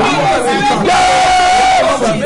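Several voices praying aloud at once in fervent, shouted prayer, with one voice holding a long cry about a second in.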